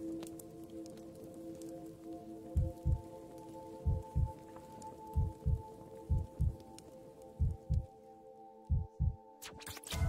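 Ambient music of sustained, held chords, joined about two and a half seconds in by a low heartbeat sound effect: paired thumps, lub-dub, repeating roughly every second and a quarter. A sharp click comes just before the end, as the chords change.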